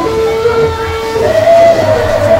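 Vietnamese funeral music (nhạc hiếu): a shrill wind instrument holds long notes, stepping up in pitch a little over a second in.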